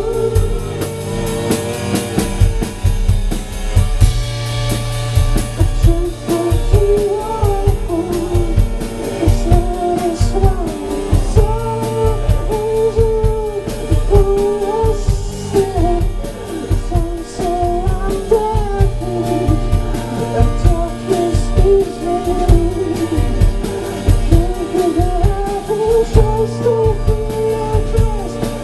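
Live rock band playing loud: electric guitars, bass guitar and drum kit, with a sung melody line over them.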